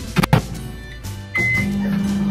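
Microwave oven: two sharp clicks of the door latching shut, then a single short button beep about one and a half seconds in, and the oven's steady hum starting up with it.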